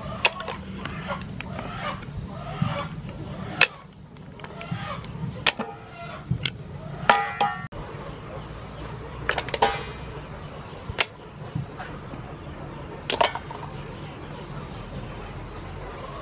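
Clam shells clicking and clinking as they are picked up, pried apart and dropped into a woven bamboo tray: sharp clicks every second or two, irregular.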